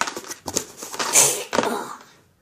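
Knocks and scraping from a cardboard craft house being handled and shifted by hand, in several short noisy bursts, loudest a little past the middle.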